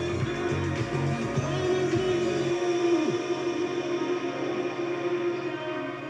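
Music playing over an FM radio broadcast: a long held note over a backing whose low beat drops out about halfway through.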